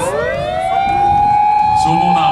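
Fire engine siren winding up through the first second and then holding a steady wail, with other sirens sounding underneath.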